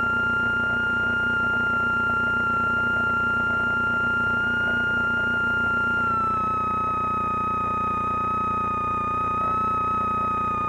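Slingsby T67 Firefly light aircraft's engine heard from inside the cockpit through the intercom audio: a steady high whine with a low throb beneath it. The whine drops slightly in pitch about six seconds in.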